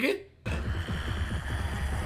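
A deep, low rumbling sound effect in an anime soundtrack, captioned "grumbling", starts suddenly about half a second in and holds steady.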